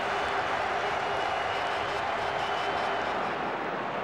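Steady noise of a large stadium crowd: many voices blended together without a break.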